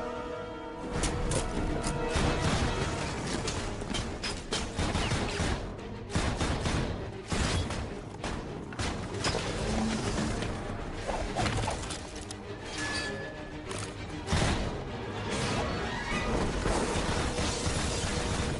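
Film action sound effects: a dense run of crashes and impacts with whooshes, mixed over the film's music score.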